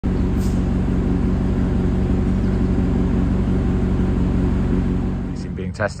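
Maserati Quattroporte 4.2-litre V8 running at a steady idle, fading out about five seconds in; a man's voice says a word near the end.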